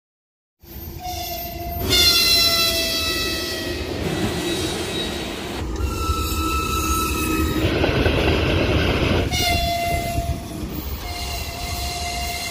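Electric freight locomotives sounding their horns as they pass, several separate blasts with the pitch sagging slightly, over the rumble of the train's wheels. The sound changes abruptly several times where clips are joined.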